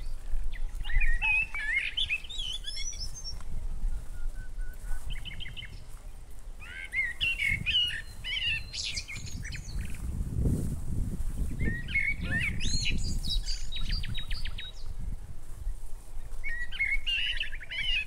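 Birds singing in repeated bursts of warbling notes and quick trills every few seconds, over a low rumbling noise that swells about ten to twelve seconds in.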